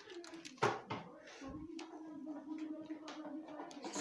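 Faint voices in a small room, with two sharp knocks about half a second and a second in, then a low steady hum through the rest.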